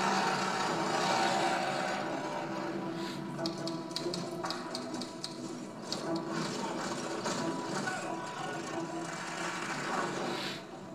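Film trailer soundtrack played over room speakers: a sustained music score, with a quick mechanical clacking of a small printing machine from about three to six and a half seconds in.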